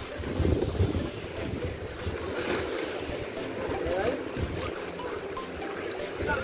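Wind rushing over the microphone, gusting in low rumbles, with choppy sea water washing around a small boat.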